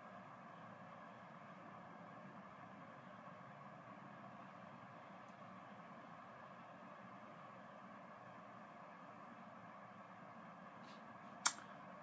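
Quiet, steady room tone with a faint hum, broken about half a second before the end by a single sharp click.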